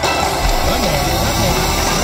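Wicked Wheel Fire Phoenix slot machine's game music and sound effects playing while the reels spin. Two Wicked Wheel symbols have landed and the last reel is still spinning, so this is the machine's anticipation sequence.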